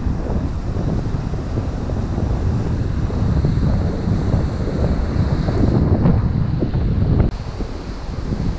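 Wind buffeting a GoPro's microphone in strong, uneven gusts, with surf washing on the beach behind it. The wind noise drops off sharply about seven seconds in.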